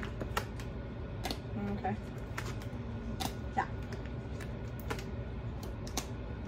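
Tarot cards being handled: about ten light, irregular clicks and taps of card stock over a few seconds, above a low steady room hum.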